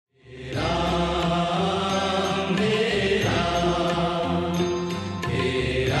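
Hindu devotional chanting sung to a musical accompaniment with a steady low drone, fading in from silence about half a second in and going on in sung phrases.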